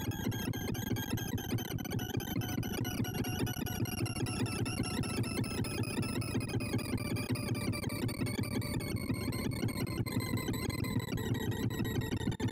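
Computer-generated sorting sonification from ArrayVisualizer, as quick sort works through 2,048 numbers: a rapid stream of synthesized beeps, each pitched by the value of the array element being accessed, blurs into a steady buzzing chatter. Over it a tone slowly falls in pitch.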